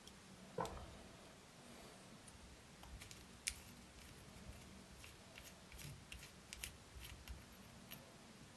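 Faint clicks and ticks of small metal lens parts being handled as a threaded retaining ring is unscrewed from the metal barrel of an I50U-1 enlarging lens. There is a soft knock just after the start, one sharp click about three and a half seconds in, and a run of small ticks near the end.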